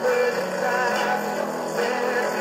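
A rock band plays an instrumental passage of the song on electric guitar, bass guitar, drums and keyboard, with a melodic lead line over sustained bass notes.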